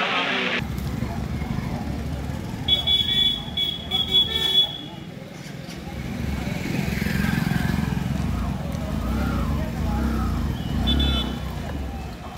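Outdoor street sound with a steady low engine rumble of passing traffic. Short high-pitched horn beeps sound in a cluster about three to four seconds in, and again briefly near the end.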